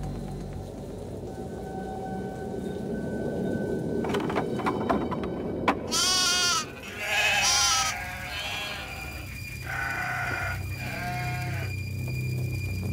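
Sheep bleating, trapped in a burning sheepfold: about five separate bleats in the second half. Before them there is a rushing noise with a few sharp clicks.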